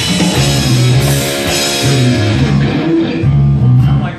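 Rock band playing live on electric guitars and an electronic drum kit, finishing a song. They end on a loud held chord that stops abruptly near the end.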